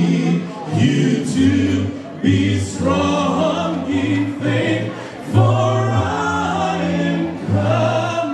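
A choir singing a gospel song in sustained phrases, with new phrases starting about two and five seconds in.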